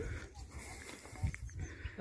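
Faint low rumble of a backhoe loader's diesel engine running as the machine moves across the dirt.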